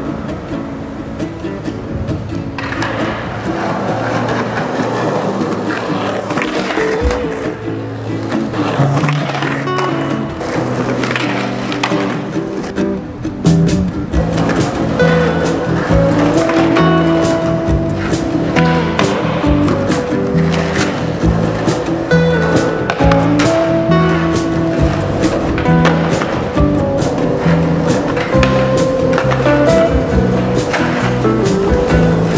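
Music with a steady beat, getting louder about halfway through, over a skateboard rolling on concrete with the sharp clacks and knocks of the board.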